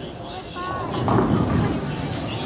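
Bowling alley din: background voices over the low rumble of balls rolling down lanes, swelling briefly about a second in.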